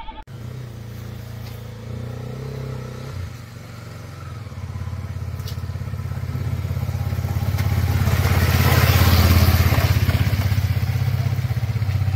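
Motorcycle engine running at low revs as the bike rolls down a dirt track, growing steadily louder to a peak about nine seconds in as it comes close, then easing off a little.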